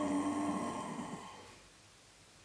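A man's low hummed 'boom' vocal sound, held briefly and then fading away over about a second and a half into a quiet room.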